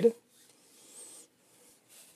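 Faint rubbing of a 3D-printed plastic dampener foot slid along the Prusa i3 MK3 printer's frame, mostly between about half a second and a second in.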